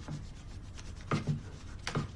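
Footsteps on a wooden floor, a pair of heavier steps about a second in and another just before the end, with the scratch of a pencil on paper.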